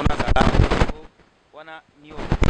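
A rapid rattle of sharp clicks or cracks lasting just under a second, followed by a short fragment of a voice.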